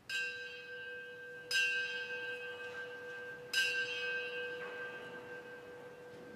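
A bell struck three times, the second strike about a second and a half after the first and the third about two seconds later. Each strike rings on with several steady tones that fade slowly, the lowest one lasting longest.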